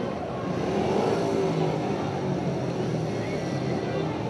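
Speedway motorcycle engines running with a slightly wavering pitch, under a steady background wash of noise.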